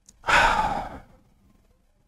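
A man's heavy sigh: one loud breath out close to the microphone, under a second long, in a pause mid-sentence.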